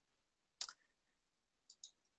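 Near silence broken by computer mouse clicks: one short click about half a second in, and two faint quick clicks near the end.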